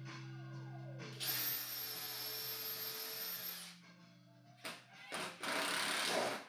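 Cordless drill/driver running for about two and a half seconds with a high whine, driving a screw through a drawer box into its false front. A couple of short noisy bursts follow near the end, over faint background music.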